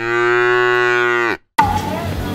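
Cow moo sound effect: one long, even moo lasting about a second and a half that cuts off abruptly.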